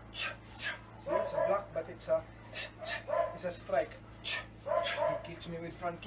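A dog barking repeatedly in short yaps, about two a second.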